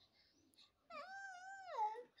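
Sulking toddler's high-pitched whimper: one drawn-out, wavering whine of about a second, starting about a second in and dropping in pitch at the end as the child begins to cry.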